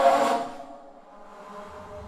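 Bass flute playing a breathy, air-filled note, loudest at the very start and fading within about half a second. A quieter, low sustained tone follows near the end.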